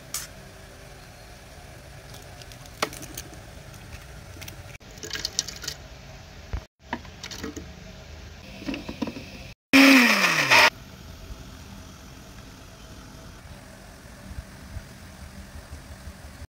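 Electric mixer-grinder jar with chopped almonds and raisins run in one loud pulse of about a second, its motor whine falling as it spins down. A few light clicks and taps come earlier.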